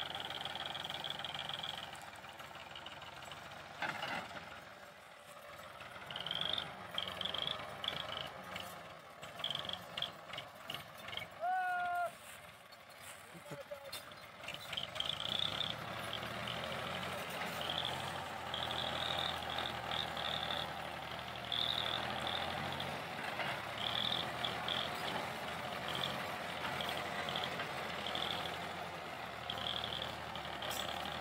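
Ford 4000 tractor engine running under load as it pulls a heavily loaded trolley, with intermittent high-pitched squeaks and a brief pitched call about twelve seconds in.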